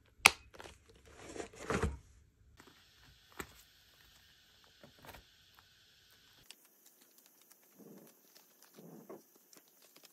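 Handling a leather-look ring binder and its paper pages: a sharp click just after the start, then a rustling scrape of cover and paper. After that come a few light clicks and soft page rustles.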